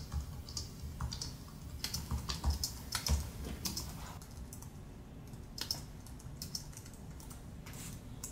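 Typing on a computer keyboard: a quick, irregular run of keystrokes, busiest in the first half, then scattered keys later.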